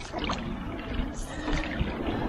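Single-bladed paddle stroking an outrigger canoe through calm water: the blade goes in and pulls through, with water splashing and trickling off it.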